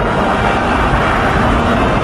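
Animated-film sound effect of a magical eruption: a loud, dense, steady rushing rumble as the glowing mud bursts upward, with the orchestral score faint underneath.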